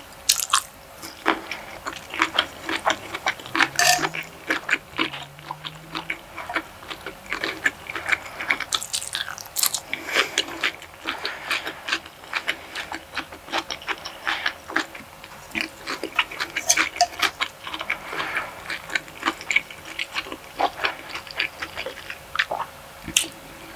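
A person chewing food close to the microphone: a steady, dense stream of wet mouth smacks and clicks.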